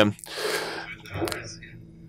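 A person's breathy gasp of breath close to the microphone, followed by a few faint short breath or voice sounds.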